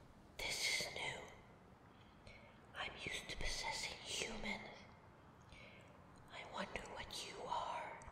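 A woman whispering in three short stretches with brief pauses between them.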